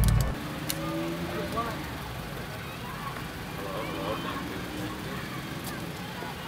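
Quiet outdoor background of steady low traffic rumble in a parking lot, under faint indistinct voices, with a light click about a second in and another near the end.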